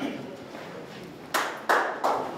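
Two sharp hits about a third of a second apart, over faint voices in the background.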